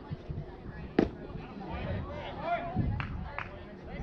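A pitched baseball makes a single sharp crack about a second in, followed by voices calling out across the field and two lighter knocks near the end.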